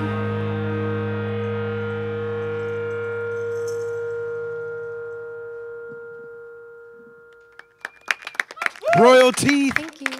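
The band's final held chord ringing out and slowly fading away at the end of a song, then a few claps and a man starting to speak near the end.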